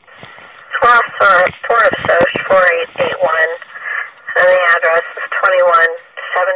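A dispatcher's voice over a police two-way radio, thin and narrow-sounding, reading back a reply to the officer's request. The channel opens with a short hiss about a second before the voice starts.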